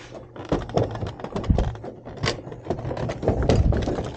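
Irregular knocks, low thumps and scrapes as a window air conditioner unit is handled in its plywood mounting panel, its case bumping and sliding against the wooden frame.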